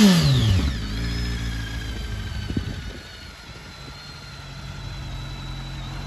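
BMW K1300S inline-four engine falling back from a throttle blip to a steady idle, heard close to its exhaust silencer. About three seconds in the idle becomes quieter and carries on evenly.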